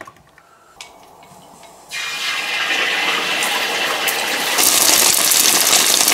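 An egg frying in hot oil in a large wok: a loud sizzle starts suddenly about two seconds in, as the egg goes into the oil, and grows louder near the end. Before it there are a couple of light knocks.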